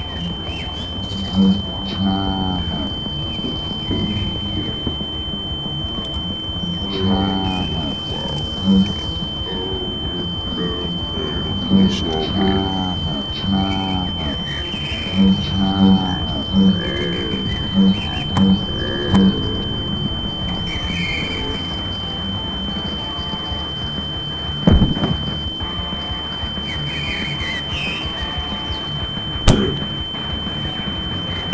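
Film soundtrack with a steady high-pitched tone held throughout. Under it are low, wavering pitched sounds with short low pulses through the first two-thirds, and a few sharp knocks near the end.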